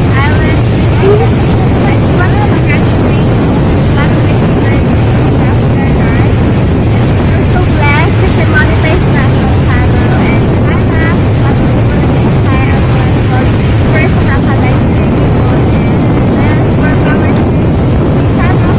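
Steady, loud wind rumble on the microphone at the seashore, with the wash of the sea and faint, scattered far-off voices.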